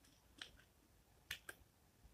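Faint clicks of a computer mouse and keyboard: one click about half a second in, then two close together about a second and a half in.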